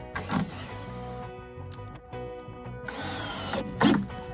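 Cordless drill driving screws into pine lumber in two bursts, a short one near the start and a longer one about three seconds in, over background music.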